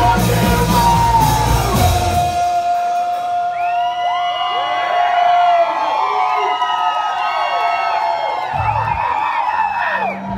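Rock band playing live through a hall PA. About two and a half seconds in, the bass and drums drop out, leaving held and sliding pitched tones with vocals over them. The low end comes back in shortly before the end.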